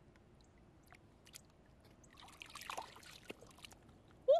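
Faint trickling and splashing of shallow ditch water stirred by hands feeling through it, with a denser patch of splashes about two to three seconds in.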